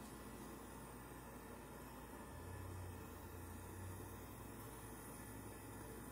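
Faint room tone: an even hiss with a low steady hum that swells slightly in the middle, and no distinct sound event.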